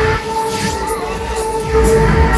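A Huss Break Dance ride in motion, heard from on board: a low rumble under loud ride music that holds one long steady note.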